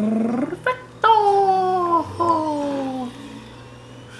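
Baby vocalizing: two drawn-out, high cooing sounds, each falling in pitch, about a second in and about two seconds in.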